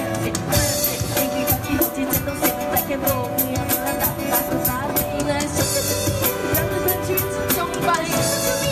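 Live pop band: two young female voices singing into microphones over a drum kit, electric guitar and keyboard, amplified through PA speakers. The drums keep a steady beat throughout.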